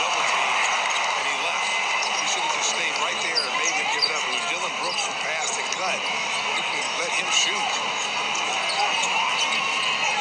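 Basketball game arena sound from a TV broadcast, played through a TV speaker: a steady crowd murmur with a basketball being dribbled on the hardwood court.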